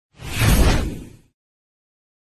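A whoosh sound effect with a heavy low end for an animated logo transition. It swells up quickly, peaks about half a second in and fades away by just over a second.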